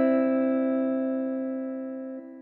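Closing music: a single held piano chord, slowly fading out.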